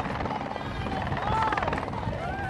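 Helicopter rotor chopping overhead in a fast, steady beat, with distant shouting voices over it.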